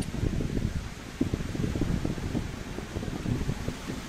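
Uneven low background rumble picked up by an open microphone on a video call, with no one speaking.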